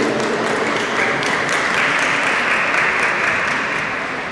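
Audience applauding, a dense patter of hand claps that fades away near the end.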